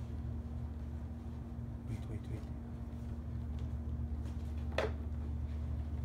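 A steady low hum runs throughout. Over it come a few faint taps of puzzle pieces being handled, and one sharper click about five seconds in.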